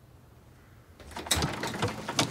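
Near silence, then about a second in a front door being unlatched and opened, with a few sharp clicks and rattles.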